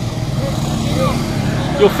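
A motor vehicle engine running steadily at a low pitch, with a couple of faint voice sounds; a man starts speaking near the end.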